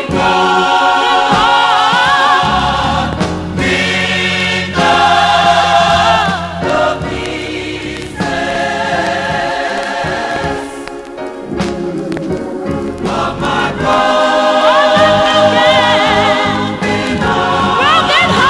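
Gospel choir singing, holding chords with vibrato that change every second or two.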